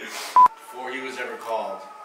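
A single short, loud electronic beep at one steady pitch, about half a second in.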